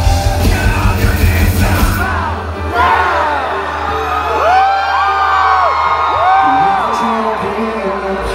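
Live metalcore band playing loud, heavy music that cuts off about two seconds in. A low held drone is left, with high, gliding yells and whoops over it.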